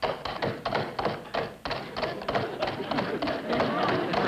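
Halves of a coconut shell clopped on a wooden box, the old radio sound effect for a horse's hoofbeats, in a quick trotting run of about five knocks a second.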